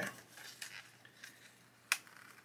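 Faint rustling of a clear plastic bag as a card-backed resin parts pack is slid back into it, with one sharp click just before the end.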